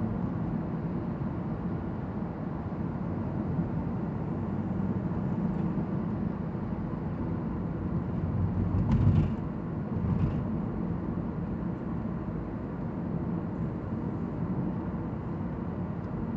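Steady road and tyre rumble inside the cabin of a 2014 Toyota Prius V cruising at about 42 mph. A louder low thump comes about nine seconds in, and a lighter one a second later.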